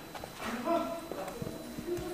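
Quiet talking with a few sharp footsteps on a hard floor.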